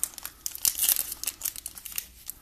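Foil wrapper of a trading-card pack crinkling in the hands as it is handled, in quick irregular crackles.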